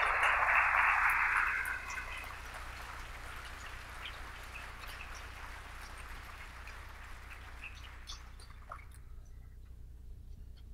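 Audience applause, loudest in the first two seconds, then tapering off and dying out about nine seconds in.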